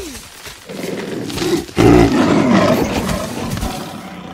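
Black panther's snarling roar, a film sound effect, starting loud about two seconds in and trailing off over the following couple of seconds.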